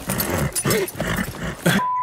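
A man laughing and making voice noises, then a short steady high beep near the end: a censor bleep dubbed over a word of the film's dialogue.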